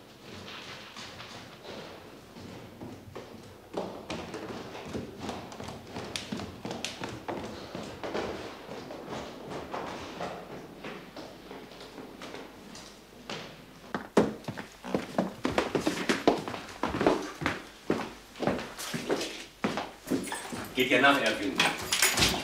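Footsteps: a quiet stretch at first, then a run of distinct, irregular steps in the second half, with a voice starting just before the end.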